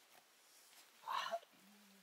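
A single short animal call about a second in, followed by a faint low steady tone.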